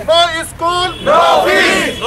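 Protesters shouting slogans in chorus, in three loud shouted phrases.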